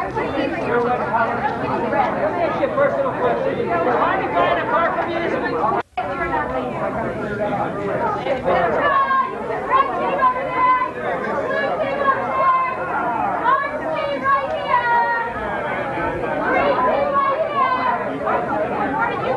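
Many people chatting at once in a room, overlapping voices with no single speaker standing out. The sound drops out for a split second about six seconds in.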